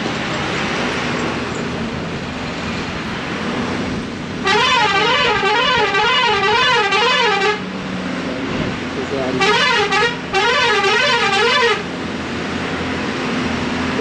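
A truck's warbling horn sounds twice, each blast about three seconds long, its pitch wavering up and down about three times a second. A truck engine drones steadily underneath.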